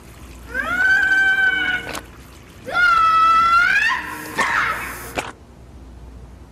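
A young woman screaming: two long, high-pitched cries, each rising at the start, then a shorter, harsh, breathy cry about four seconds in.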